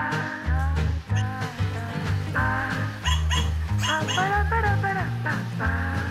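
Background music with several short, yappy barks from a battery-powered plush toy dog, mostly in the second half.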